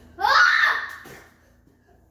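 A child's short, high voiced cry that falls in pitch, lasting about half a second near the start, followed by quiet.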